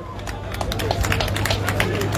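A rapid, irregular patter of sharp claps or taps, most likely scattered hand clapping from the crowd, over a steady low hum.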